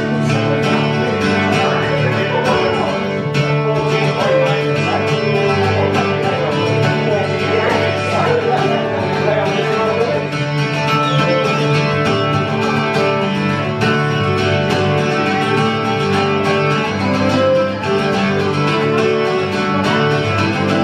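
Acoustic mandolin-family instrument played steadily, strummed chords mixed with picked melody notes, in an instrumental passage of a folk song.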